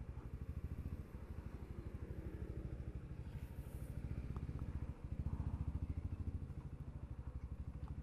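Motorcycle engine with an aftermarket racing exhaust of the quieter kind, running at low revs with a steady, evenly pulsing exhaust note. The note dips briefly about five seconds in.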